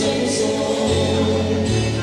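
A group of voices singing a Christian song together over instrumental accompaniment with a bass line that holds each note for about a second.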